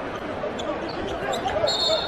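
Basketball being dribbled on a hardwood court under steady arena crowd noise. Near the end a short, high, steady referee's whistle sounds, calling an over-and-back violation.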